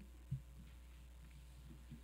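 Quiet room tone with a steady low hum, broken by one soft low thump about a third of a second in.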